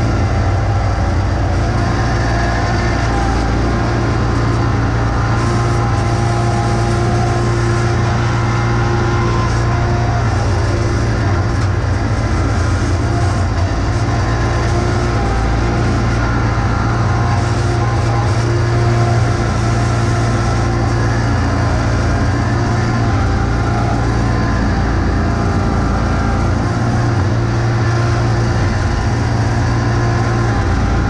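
John Deere X585 garden tractor's engine running at a steady speed under load as the tractor pushes snow with its front plow blade.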